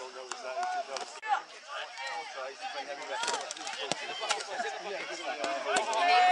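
Indistinct voices of players and onlookers calling and talking across an open rugby field, several at once and none clear. A few sharp knocks are heard in the second half.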